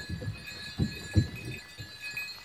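Footsteps crunching in snow, a few faint steps a second, under a faint steady high-pitched hum.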